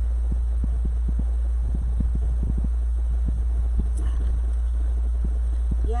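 Steady low hum of an electric fan running, with scattered soft knocks as a plastic tumbler is handled and sipped from.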